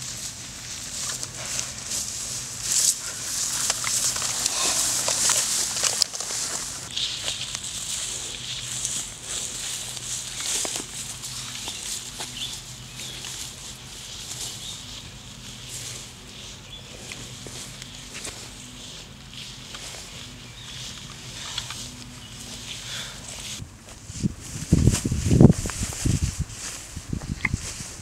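Tall grass and weeds rustling in a field, loudest in the first few seconds, with a louder low rumble near the end.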